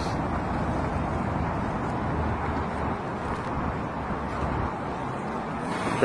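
Steady road traffic noise from cars on a city street, an even rumble with no single event standing out.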